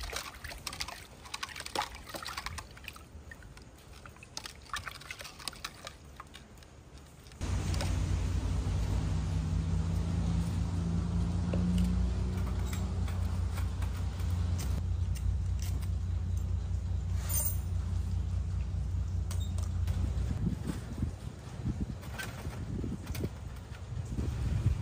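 Light clinks and knocks of a metal pot as cut carrots are handled in it. About seven seconds in, a steady low rumble with a faint hum starts suddenly and lasts until near the end.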